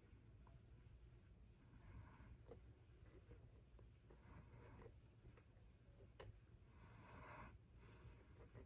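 Near silence: faint room tone with a few soft ticks and light scraping as a thin stick swirls wet acrylic paint on a canvas.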